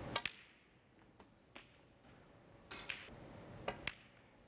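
Snooker balls and cue: a few sharp clicks of the cue tip striking the cue ball and balls knocking together, with quiet between. Two clicks come close together just after the start and two more near the end.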